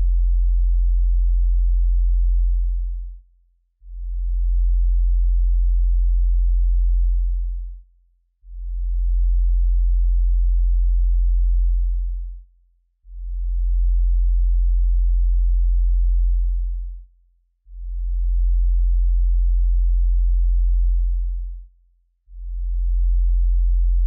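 A synthesized sine-wave bass tone on a very low F, live-coded in TidalCycles, repeating every four and a half seconds or so. Each note holds for about four seconds, then fades out briefly before the next one enters.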